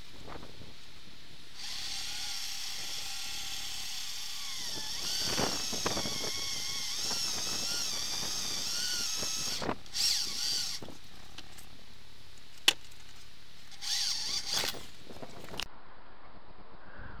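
Handheld electric drill running as it bores through the seat's metal runner to widen a mounting hole to 8 mm: about eight seconds of steady whine whose pitch wavers as the bit bites, then two short bursts of the drill. A single sharp click falls between the bursts.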